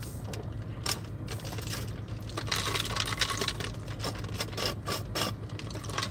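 Light, scattered clicking and rattling over a steady low hum inside a car.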